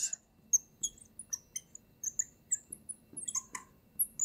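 Fluorescent marker squeaking on a glass lightboard while writing: a string of short, high-pitched squeaks at irregular intervals, several a second.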